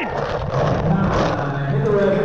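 Indistinct voices over a noisy background, with a few faint clicks.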